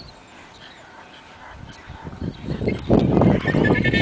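A leashed dog, worked up for bite-sleeve training, gives a high-pitched whine in the last second. Under it, loud low rumbling with knocks builds up from about two seconds in.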